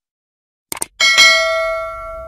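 Subscribe-button animation sound effects: a quick double mouse click, then about a second in a bright notification-bell chime that rings on and slowly fades.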